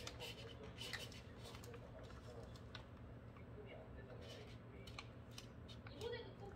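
Faint chewing and small mouth clicks from a person eating grilled thin-sliced beef brisket, with scattered light clicks, the odd one from metal chopsticks in the frying pan.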